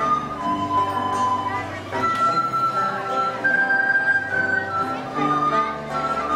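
Live son segoviano folk music: a melody moving note to note in held tones over a strummed string accompaniment.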